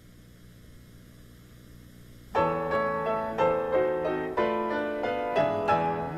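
Faint room tone with a low steady hum. About two seconds in, piano accompaniment for a ballet class starts suddenly: recorded chords struck on a regular beat.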